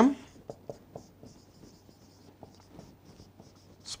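Marker pen writing on a whiteboard: a run of short, light strokes with small taps as a line of characters and numbers is written out.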